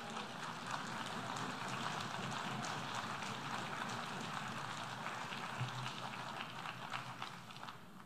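Audience applause, dense steady clapping that dies away near the end.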